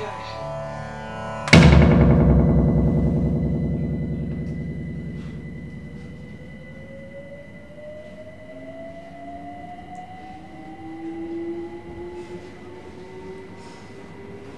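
Sampled music from an Akai MPC500 breaks off about a second and a half in with a single loud hit that rings out with a wavering decay over several seconds. After it a faint steady high tone and a slowly rising whine carry on to the end.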